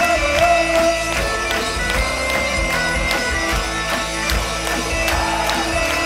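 Live rock band playing an instrumental passage without vocals: guitars, a steady drum beat and a wavering melody line carried by bagpipes.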